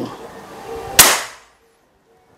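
A single shot from a PCP bullpup air rifle, a local copy of the FX Impact MK2, about a second in: one sharp crack that dies away within half a second. It is a full-power shot that the chronograph clocks at 922.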